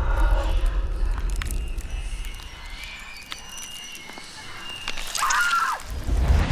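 Horror-trailer sound design: a deep rumble fading away over the first two seconds, then a quiet, eerie stretch with faint high tones and ticks, and a short gliding, wavering sound near the end as the level rises again.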